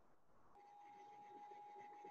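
A faint, steady, high tone on one held pitch, starting about half a second in, over near-silent room tone.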